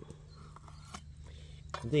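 Vegetable knife scoring a raw flounder on a wooden chopping board: faint scraping cuts through the skin, with a light knock about a second in.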